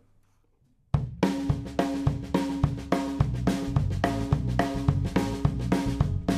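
After about a second of near silence, a live band comes in: a drum kit with snare, hi-hat and cymbals keeps a steady beat under acoustic guitar, electric guitars and bass.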